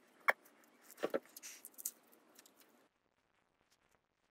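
Faint handling noise of fingers on a taped gauze neck dressing: a sharp click, then a few quick taps and light rustling. The sound drops to near silence about three seconds in.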